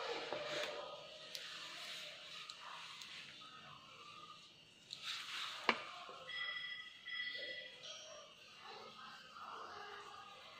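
Wax crayon rubbing on paper while colouring, a soft scratchy hiss, with faint room sounds behind it and a sharp click about halfway through.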